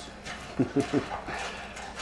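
A canine giving a quick run of four or five short, falling whimpers about half a second in, heard from a TV episode's soundtrack.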